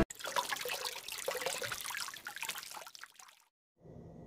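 Water bubbling and trickling, with many small splashes, cutting off suddenly about three and a half seconds in.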